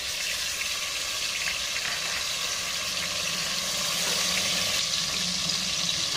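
Finely grated onion sizzling steadily in hot oil.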